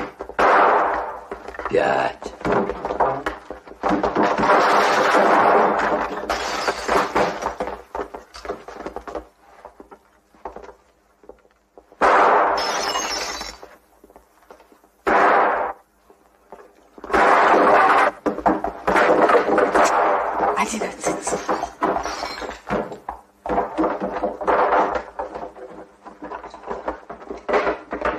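Revolver shots and breaking glass in a gunfight, with a man's voice talking between them. Several sudden loud cracks come about halfway through.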